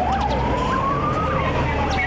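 Ural fire engine's siren wailing: one slow rise in pitch lasting over a second, then a fall near the end, over the low rumble of the truck's engine as it pulls past.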